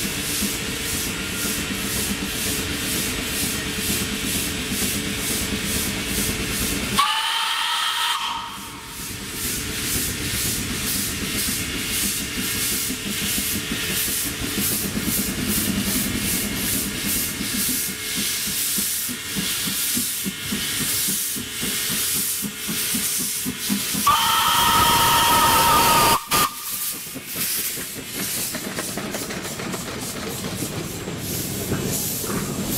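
Kp4 narrow-gauge steam locomotive working toward and past the listener, its exhaust beating in a steady, even rhythm. It sounds its whistle twice, each blast several notes at once: a short one about seven seconds in and a longer, louder one of about two seconds near the end, as the coaches begin rolling past.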